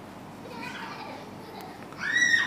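Faint background voices over the room's low hiss, strongest in the first half.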